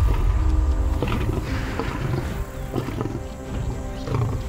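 Lion growling with a low rumble, heaviest in the first second or so, over a dramatic music score.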